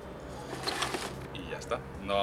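Hands working granular akadama bonsai substrate in a pot, with a short gritty rustle about half a second in and a few light clicks near the end.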